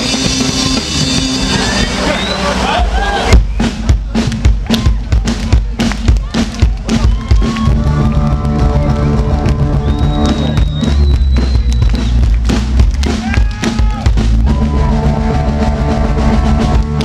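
Live ska band playing, with saxophone over drums, bass and electric guitar. About three seconds in, the music breaks into sharp, choppy drum-led hits, and held notes build back in from around the eighth second.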